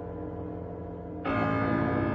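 Live performance of a composed piece for two players: bell-like metallic tones ring on, then a little over a second in a louder bell-like stroke sounds and sustains with many ringing overtones.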